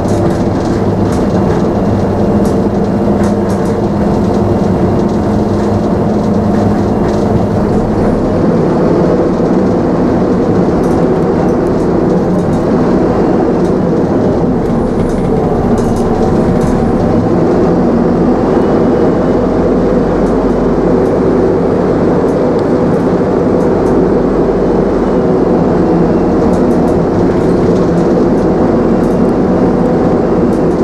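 Optare Solo single-decker bus heard from inside its saloon while under way: a steady engine drone with road noise and occasional light rattles from the fittings. The engine note shifts about eight seconds in.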